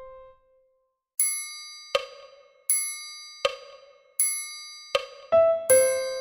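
A piano's C, the singer's starting note, dies away at the start. After a short gap a metronome click track ticks at 80 bpm, a click every three-quarters of a second, with a ringing, bell-like click alternating with a sharper one. Near the end the piano accompaniment comes in under the clicks.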